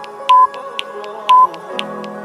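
Interval timer beeping down the last seconds of an exercise: two short, high, loud beeps about a second apart over background music.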